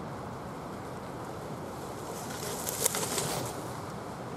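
A cyclocross bike passing close by on a leaf-strewn woodland track: a brief rustle and crackle of tyres through dry leaves and mud, with a few sharp clicks, peaking a little before three seconds in, over a steady outdoor hiss.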